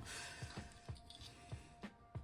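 Faint background music, with a few light clicks and taps from handling small plastic parts and a scalpel on a cutting mat.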